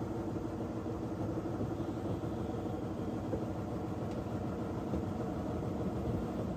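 Small diesel shunting locomotive's engine running steadily with a low drone while it shunts a short rake of stock.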